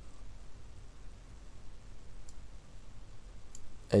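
Two faint, sharp computer mouse clicks, about two and three and a half seconds in, over a low steady background hum.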